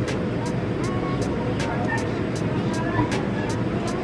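Steady low mechanical hum of a cafeteria serving area, with faint voices in the background and a light ticking about three or four times a second.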